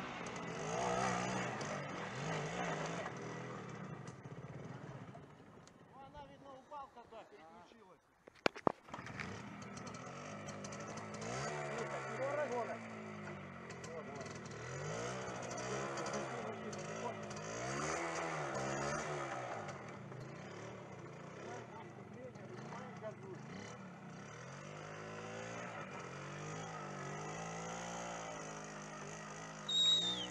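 Small motorcycle engine revving up and down under load as the bike is pushed and ridden through a shallow stream at a washed-out bridge. A couple of sharp knocks come about eight seconds in.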